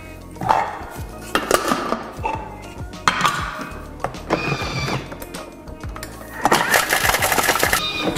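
Background music, then about six and a half seconds in a Thermomix's blade starts chopping chunks of Parmesan at high speed (speed 8): a dense, loud rattling grind, the loudest sound here.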